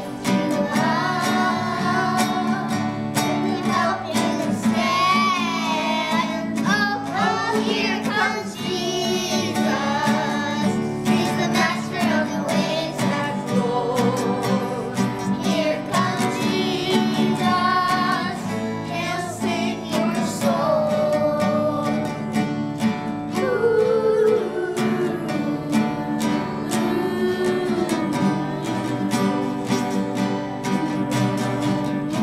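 Young children singing a song, accompanied by two strummed acoustic guitars.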